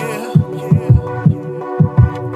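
Instrumental hip hop beat: a deep kick drum hitting about three times a second under sustained synth chords.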